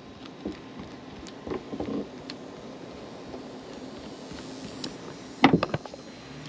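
Faint ticks and scrapes of a flathead screwdriver working a hose clamp on a jet ski engine's cooling line, then a quick cluster of sharp clicks about five and a half seconds in, the loudest sound.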